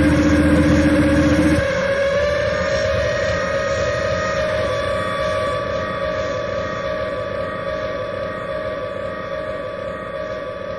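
Experimental noise-music drone: steady held tones over a hissing wash. A low rumbling layer cuts off about a second and a half in, leaving the higher held tones, which slowly fade.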